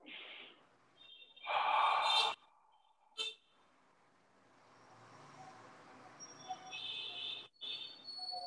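Breathing into a video-call microphone: a short breath at the start and a longer, louder breath out about a second and a half in. A brief click follows, then a faint hiss with a thin steady tone rises over the last few seconds.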